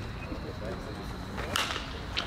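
A bat hitting a pitched baseball: one sharp crack about a second and a half in.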